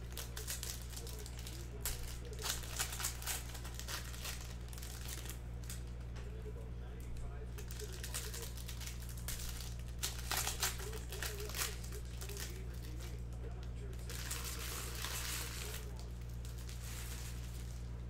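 Foil wrapper of a trading-card pack crinkling in spells as it is pulled open and handled, over a steady low hum.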